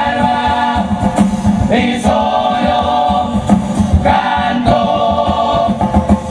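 Uruguayan carnival murga chorus singing together in several voices, over a steady beat of percussive strokes.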